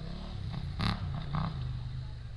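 Motorcycle engine idling with a low, steady hum, with a couple of short faint sounds about a second in.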